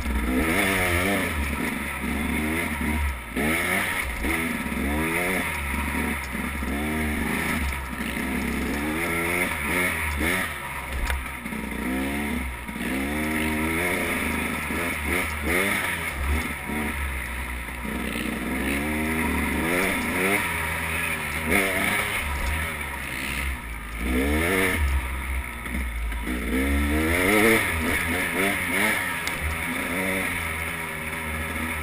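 Dirt bike engine revving up and down over and over as the throttle is worked along a trail, its pitch climbing and dropping every second or two. A steady low rumble runs underneath.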